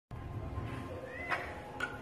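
A Sphynx cat gives a short, rising call about a second in. Background music begins near the end.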